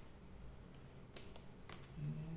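Faint clicks and light scraping of a tarot card being drawn and laid down on a table, a few short clicks in the second half.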